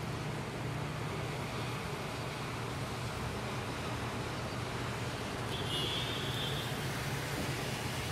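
Heavy rain falling steadily, an even hiss, with a low steady hum underneath.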